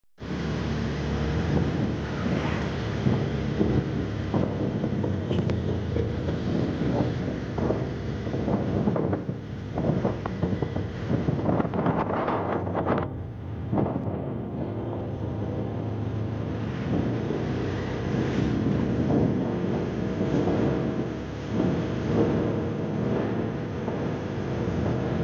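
Outdoor ambience: wind rumbling and buffeting on a phone microphone over general street and crowd noise.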